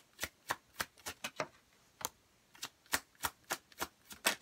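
A deck of tarot cards being shuffled hand over hand: a run of short, sharp card slaps and taps, about three a second, with a brief pause near the middle.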